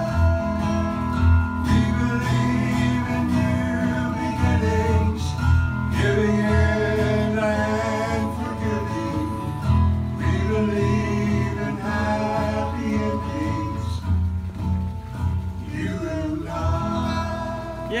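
Two acoustic guitars played together, with singing, in a country song.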